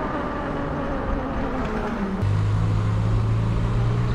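Motorcycle engine running on the move over wind and road noise. Its note falls steadily for about two seconds, then changes abruptly to a steady, louder low drone.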